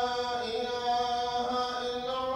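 Chanted vocals from a programme intro jingle: a voice holding long, steady notes that shift to new pitches a couple of times.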